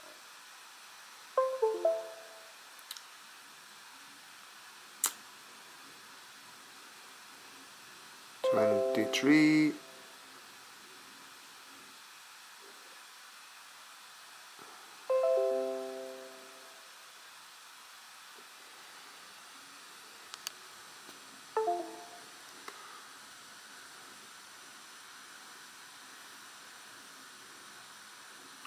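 Short electronic tone sequences, heard three times, each a quick run of tones that fades out briefly. They are status tones from a DJI Spark drone during a firmware update.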